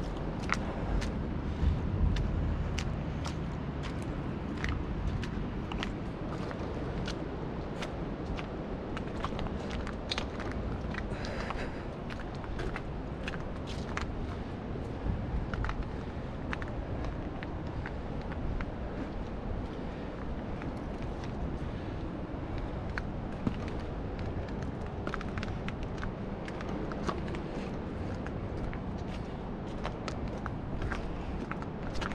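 Footsteps on gravel and loose stones at a creek's edge: irregular crunches and clicks over a steady rushing noise.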